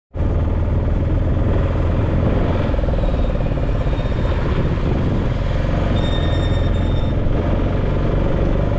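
Road traffic with motorcycles and cars passing, a loud steady rumble throughout. A thin high tone sounds for about a second around six seconds in.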